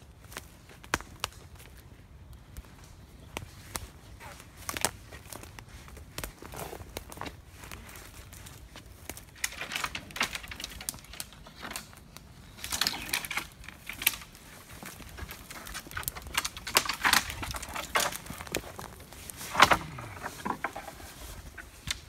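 Footsteps crunching over dry twigs and brash, then cracking, snapping and rustling of dead wood as a dead ash tree is pushed over and pulled up out of the soil, the loudest crack coming near the end. The tree comes up easily because its roots have rotted away under ash dieback.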